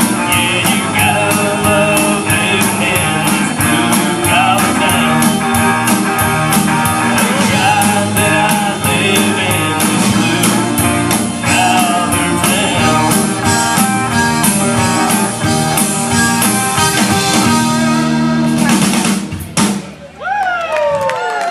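Live band playing a rock-style song through the PA: drum kit, electric and acoustic guitars, with singing. The song comes to an end just before the close.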